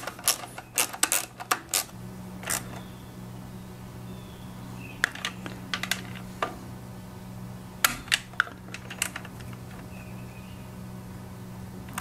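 Hand socket ratchet clicking in quick runs as bolts are run down on a small engine's housing, then a few scattered single clicks as the tool is worked and handled.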